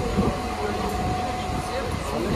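Carriage of a moving local train: steady low rumble and running noise from the rails, with a thin steady whine that cuts off shortly before the end.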